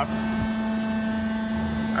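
Steady machinery hum with one strong low tone and fainter higher tones, from equipment running at the roll forming machine. There is no rolling, cutting or impact from the forming itself.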